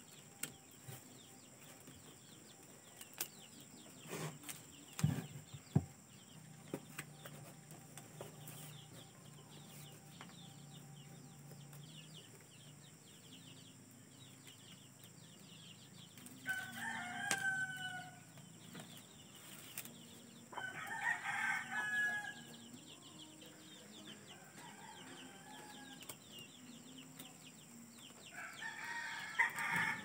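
A rooster crowing twice, each crow about a second and a half long and some four seconds apart, with a third call starting near the end. A few soft knocks come in the first several seconds.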